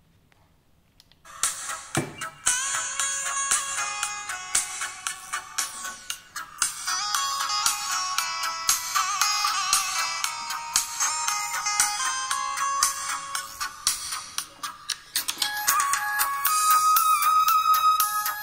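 Music played through a pair of Dali M8 neodymium-magnet silk-dome tweeters on a listening test, starting about a second in. The sound is bright and thin, with almost no bass.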